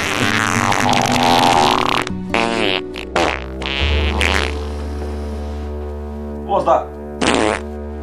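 Film soundtrack: a loud noisy burst for about the first two seconds, then background music with a held low bass note, under brief snatches of voices.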